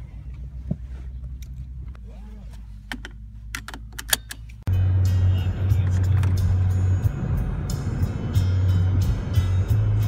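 Inside a car: for the first half, a low idle-like rumble with a few light clicks and rattles. About halfway through it jumps to the loud, steady low rumble of a car at highway speed, heard from the cabin, with music playing.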